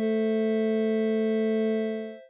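Synthesized piano tones from a browser-based augmented-reality piano app: a chord of steady, pure electronic tones, one low and one higher, held for about two seconds and fading out near the end.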